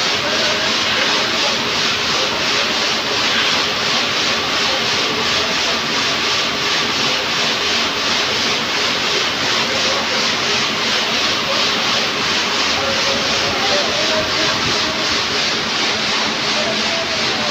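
Factory machinery running in a stone-slab works: a loud, steady mechanical noise with a fast, even pulsing throughout.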